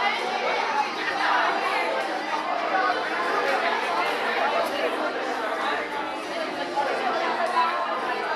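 Indistinct chatter of several people talking at once, with voices overlapping continuously and no single voice clear.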